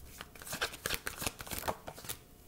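Deck of tarot cards being shuffled by hand, cards slipping and tapping from one hand into the other: a run of light, irregular clicks, several a second.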